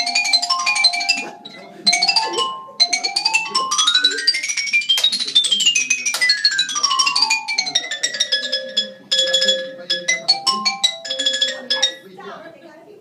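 Xylophone played fast with mallets: rolled repeated notes, then a rapid run climbing up the keyboard and straight back down, ending in more rolled notes that stop right at the end.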